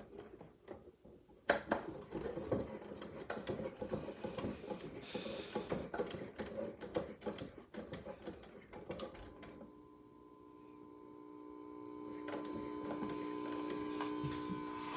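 Quick clicking and rattling from the clock mechanism of a 1959 General Electric C-435A tube clock radio as its setting knob is turned and the hands spin round. About nine and a half seconds in, the clicking stops and a steady tone of several held pitches from the radio slowly grows louder.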